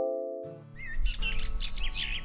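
A sustained musical chord from an intro jingle fades out over the first half second. Then birds begin chirping rapidly over soft background music.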